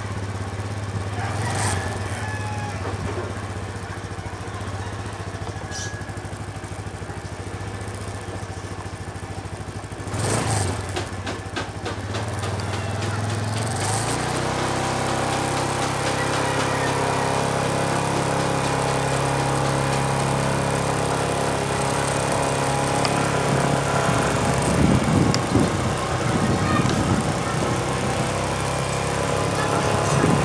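Small motorcycle engine running steadily at idle. There is a brief noisy burst about ten seconds in. About fourteen seconds in, the engine note rises and fills out as the bike pulls away and rides along.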